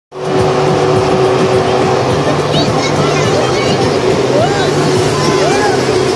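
Foam cannon blower making a loud, steady rush of air as it sprays foam. Children's shouts rise and fall over it from about two-thirds of the way in, with dance music's stepping bass line underneath.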